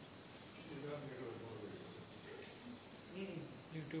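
Crickets trilling steadily at a high pitch, faint, under soft indistinct voices.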